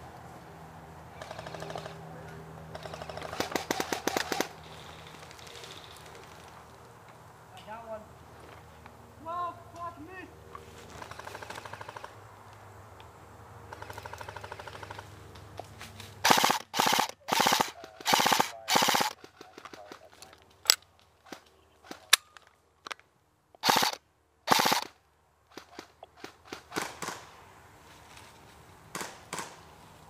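M4-style airsoft electric rifle firing on full-auto: short rattling bursts, several in quick succession about halfway through, then single shots and further bursts. A quieter rapid rattle of fire comes earlier.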